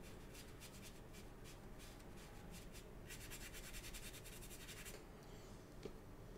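Ink-loaded paintbrush scratching faintly across paper in short, irregular strokes. About three seconds in comes a two-second run of rapid scrubbing strokes, about ten a second, and there is a single tap near the end.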